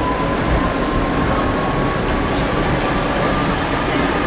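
Tram running, heard from inside the car: a steady rumble of wheels on rails with a thin electric motor whine that rises slowly in pitch.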